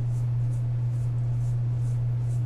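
A steady low electrical hum, unchanging and the loudest sound throughout, with only faint soft rustles above it.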